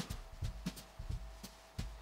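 Soft, irregular taps and rustles of hands folding a cloth pocket square, with a faint steady hum underneath.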